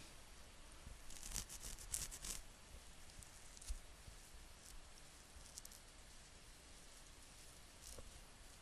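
Near silence, with faint scratchy rustling for a second or so starting about a second in, a single soft click a little before the middle, and a few fainter ticks after.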